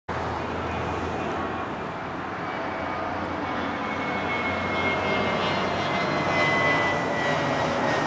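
Twin-engine Airbus A320-family jet airliner passing low overhead, a steady jet engine roar that swells gradually, with a high turbine whine that slowly falls in pitch as the plane goes by.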